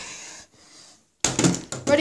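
A faint breathy exhale, then about a second in a sudden loud clatter of knocks and handling noise that runs straight into speech.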